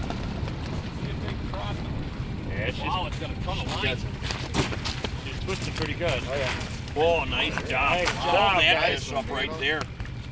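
Wind rumbling on the microphone, joined from about three seconds in by several people's excited voices and exclamations, loudest near the end, as a fish is brought up through the ice hole.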